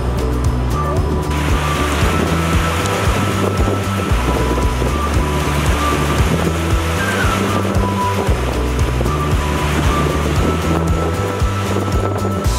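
Background music with a steady bass line. A hiss of rushing river water joins about a second in and drops out near the end.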